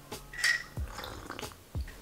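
A short slurping sip from a mug of honey-lemon drink, heard once about half a second in, followed by a few faint clicks.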